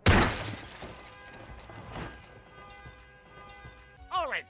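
Cartoon crash sound effect: a sudden loud smash with shattering glass as the car wrecks. Scattered smaller clinks and rattles of debris follow as it dies away over about a second.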